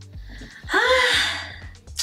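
A woman's breathy, voiced sigh, about a second long, rising then falling in pitch, over background music with a steady beat.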